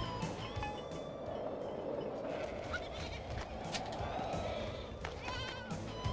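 Several animals bleating, like a flock of livestock, mixed with music; one wavering, quavering call stands out about five seconds in.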